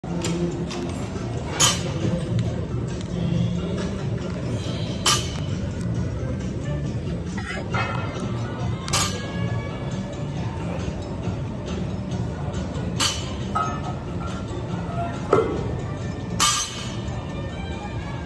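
Background music in a gym, broken by about six sharp metallic clanks of weight plates and bars.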